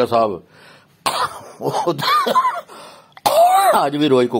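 A man coughing and clearing his throat, two harsh bouts about a second in and again just after three seconds, mixed with bits of voiced speech.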